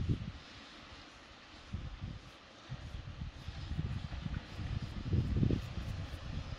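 Wind buffeting the microphone outdoors: a gusty low rumble that swells about three seconds in and again, most strongly, near the end.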